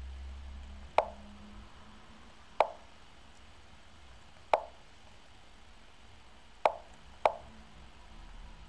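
Lichess online chess move sound effects: five short wooden clicks, one for each piece moved in a fast blitz game, spaced a second or two apart with the last two close together.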